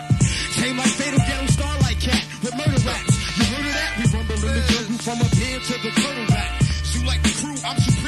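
A man freestyle rapping over a hip hop beat with a deep bass line.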